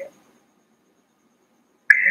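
Near silence: a pause in a man's speech, with his voice trailing off at the very start and starting again just before the end.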